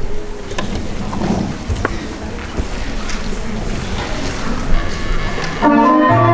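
Stage and hall noise with a few scattered knocks and faint voices as performers move about; near the end, keyboard music starts with held chords.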